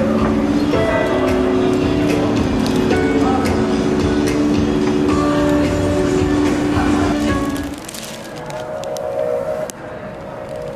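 Background music of held, sustained chords that change in steps, turning quieter about eight seconds in.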